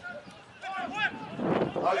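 Speech: a few words from a man's voice, then a short rush of noise about one and a half seconds in.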